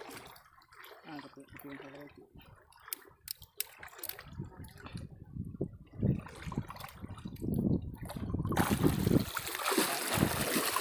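Water splashing as a person wades through shallow sea water. It starts loudly about three-quarters of the way in. Before that come a few small clicks and handling noises and a faint low voice.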